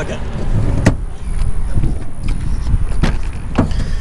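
A few sharp clicks of a pickup truck's rear door being unlatched and swung open, about a second in and again near the end. Under them runs a steady low rumble of wind and handling on a handheld camera.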